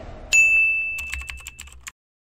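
Logo intro sound effect: a single bright ding that strikes about a third of a second in and rings for about a second, with a scatter of glittery twinkles that fade out just before the end.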